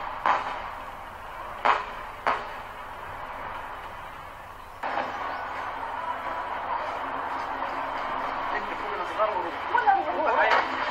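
Airstrike explosions hitting a building: three sharp bangs in the first few seconds, then a steady rushing noise that steps up louder about five seconds in, with voices near the end.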